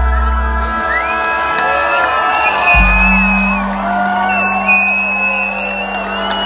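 Live band sounding the held closing chord of a song, with a low sustained note coming in about three seconds in, while the audience whoops and cheers over it.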